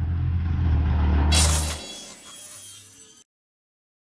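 Whoosh-and-rumble sound effect for an animated production-company logo. A low rumble swells, a sharp hissing hit lands about a second and a half in, and a quieter tail fades before the sound cuts off dead a little after three seconds.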